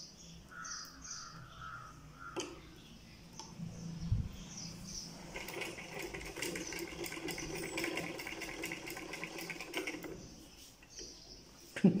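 Black mechanical sewing machine stitching through patchwork fabric: a fast, even run of needle strokes for about five seconds in the middle, after a thump and some faint handling of the cloth.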